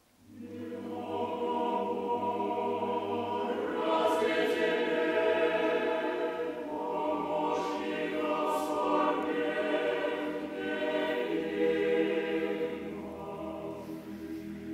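Mixed choir of men's and women's voices singing Russian Orthodox liturgical chant unaccompanied. It enters out of a brief silence, grows fuller about four seconds in and eases off near the end.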